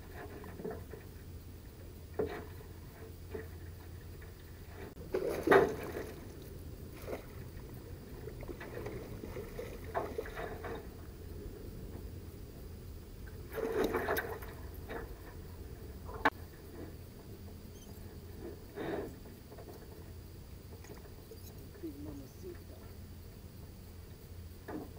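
Scattered splashes and knocks as a hooked Chinook salmon is brought alongside a small boat and scooped into a landing net, over a steady low hum. The two loudest bursts of splashing, each about a second long, come about a quarter of the way in and a little past halfway.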